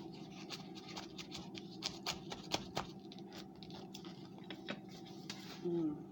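Crunching of a mouthful of frozen cornstarch being chewed, a run of irregular crisp clicks and crackles, ending in a closed-mouth 'mm'.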